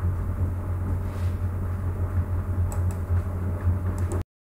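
Steady low electrical hum and room noise picked up by a desk microphone, with a few quick computer-mouse clicks near the end.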